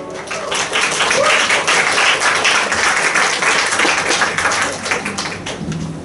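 Audience applauding as a live band's song ends. The clapping swells within the first second, holds, then thins out near the end.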